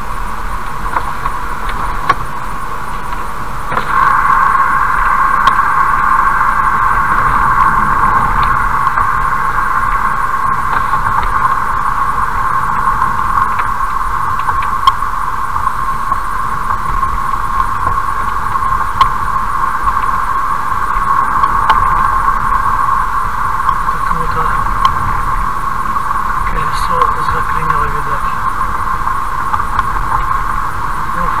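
Steady driving noise inside a car cruising on a highway, rising a little about four seconds in and holding steady.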